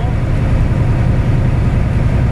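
Steady drone of a semi-truck's diesel engine and tyre noise, heard from inside the cab while cruising at highway speed.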